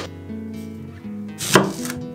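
A chef's knife cutting once through a whole onion and hitting the wooden cutting board, a single crisp cut about one and a half seconds in.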